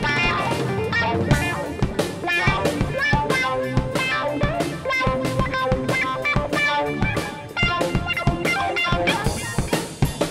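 Rock band playing: guitar over a steady drum kit beat with bass drum, easing briefly about seven seconds in before picking up again.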